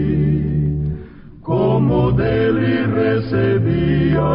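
A hymn sung over a steady, held instrumental accompaniment. It breaks off briefly about a second in, then the next sung phrase begins.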